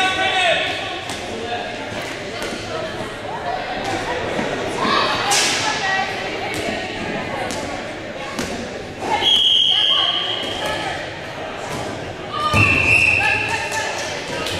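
Dodgeballs bouncing and thudding on a hardwood gym floor, with players shouting in the echoing hall. Two shrill, steady whistle blasts, each about a second long, come about nine and twelve and a half seconds in.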